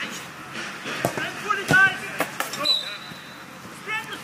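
Short shouted calls from players, with a few sharp knocks of a football being kicked.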